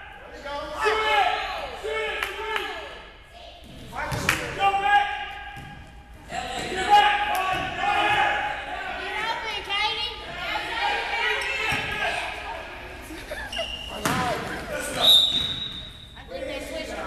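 Basketball bouncing and thudding on a gym floor in a large, echoing hall during a youth game, under near-constant shouting voices. Near the end there are a couple of sharp knocks and a brief high steady tone.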